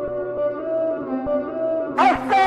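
Turkish remix music: a slow melodic lead line of held notes stepping between pitches, with a few soft low thumps beneath.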